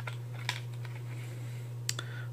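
Three light clicks of a small five-shot .22 mini revolver being handled and lifted out of a plastic phone case, over a steady low hum.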